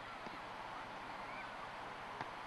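Gulls calling faintly: a few short, sliding calls over a steady background hiss of open-beach ambience.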